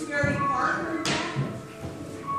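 Voices in a large, echoing hall, with a single thud about a second in.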